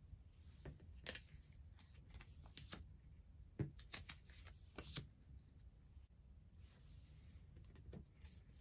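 Faint taps and slides of card-game cards being picked up and laid down on a tabletop, a scattering of soft clicks through the first five seconds or so.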